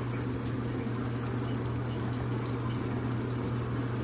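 A thin stream of automatic transmission fluid runs from disconnected cooler lines into a drain pan, with a steady low hum underneath.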